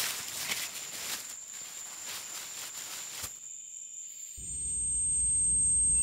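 Footsteps crunching through dry fallen leaves over a steady chirping of crickets. About four seconds in, a low rumble swells up and grows louder.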